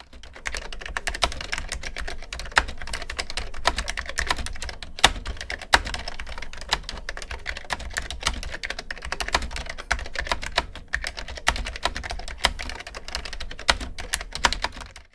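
Fast, continuous typing on a Cherry BFN-3 keyboard with Cherry solid-state capacitive (foam and foil) switches: a dense run of key strikes with a pretty deep sound.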